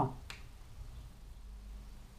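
Quiet room tone with a steady low hum, broken by one faint, short click about a third of a second in.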